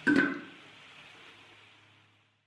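Wooden thumb piano set down on the rim of an aluminium waste-paper bin: one knock just after the start with a brief metallic ring. After it only a faint low hum, fading out.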